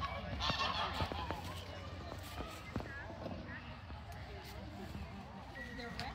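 A flock of farmyard geese honking, many short calls overlapping, with a couple of sharp knocks in the first few seconds.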